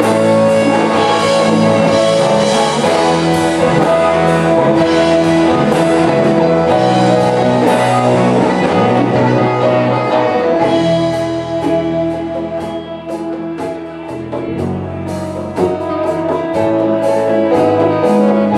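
Live funk-blues band playing an instrumental passage: electric guitars, bass, drum kit and congas, with a saxophone. About eleven seconds in the band drops to a quieter, sparser groove with steady drum ticks, building back up near the end.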